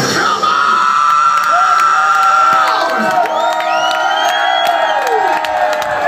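Crowd cheering and whooping right after a heavy metal song cuts off, with steady high ringing tones from the stage held over the cheers.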